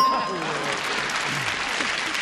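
Studio audience applauding a matched answer, with a brief bell-like chime right at the start that marks the match.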